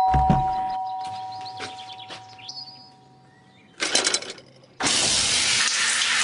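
Two-tone doorbell chime ringing and slowly fading over the first three seconds. A short clatter about four seconds in, then a shower running steadily from about five seconds in.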